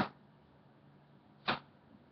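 Near silence in a pause of a man's speech: the clipped end of his last word right at the start, and one short, sharp sound about a second and a half in.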